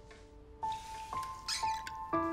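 Soft background score of sustained single notes entering one after another, with a brief rustle of cloth about one and a half seconds in.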